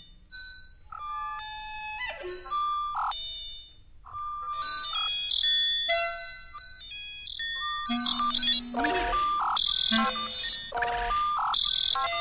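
Electroacoustic music for clarinet and tape: short, separate pitched notes and electronically treated clarinet-like tones, sparse at first, then densely layered and louder from about four seconds in, with hissy noise bursts near the end.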